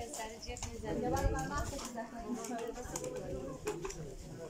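People talking nearby, the words not made out, with a few sharp clicks, the clearest shortly before the end.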